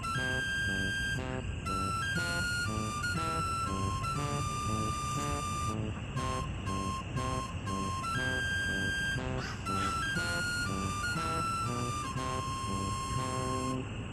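Background music: a simple, bright tune of clean held notes stepping up and down over a steady rhythm.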